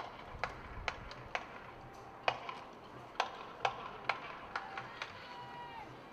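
Sharp clicks at a marching tempo, about two a second with a few skipped beats, like drumsticks clicking time for a marching band. Near the end a faint pitched note is held for about a second.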